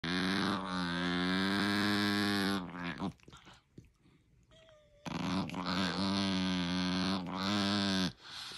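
A small dog's long, drawn-out play growl with a wavering, moan-like tone, heard twice: about two and a half seconds, a pause, then about three seconds more. It is a play vocalisation during rough-and-tumble with another dog, not aggression.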